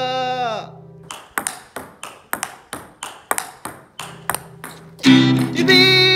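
A held sung note over acoustic guitar dies away in the first second. Then a table tennis ball clicks off a paddle and the table in a quick rally, about four sharp ticks a second, for some four seconds. Near the end, strummed acoustic guitar and singing come back in loudly.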